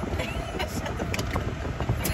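Steady low rumble of a car heard from inside its cabin while it is being driven.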